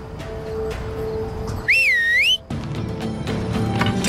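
A loud two-finger whistle, one call about two seconds in that starts high, dips and then climbs in pitch, over background music.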